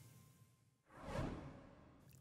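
A single whoosh transition sound effect, swelling and fading over about half a second a little after a second in, as the picture changes to the full-screen photo. Near silence on either side of it.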